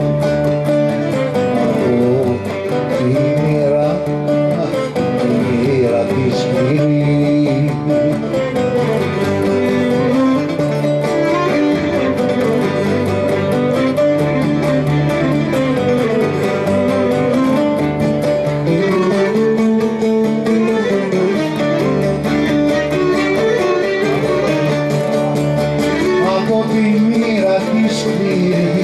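Cretan folk music played without pause, led by plucked strings with a bowed string line above them.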